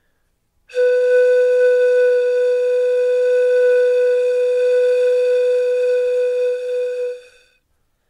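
A single long flute-like note held steadily at one pitch, starting just under a second in and fading out near the end.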